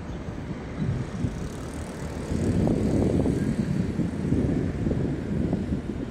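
Wind buffeting the phone's microphone: an uneven low rumble that swells in gusts, growing louder about two seconds in.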